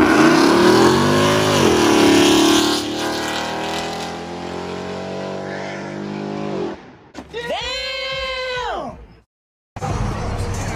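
Supercharged Ford F-150 pickup's V8 pulling away hard: the engine note drops once near the start, as at a gear change, then climbs steadily for several seconds as the truck draws away and fades. Near the end comes a short separate tone that rises and falls, then the sound cuts off abruptly.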